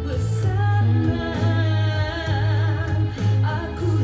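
A woman singing a Malay song, holding long wavering notes, over a backing track with a steady bass.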